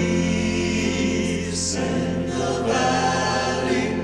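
Several male voices singing a held gospel harmony, choir-like, over a live band's accompaniment.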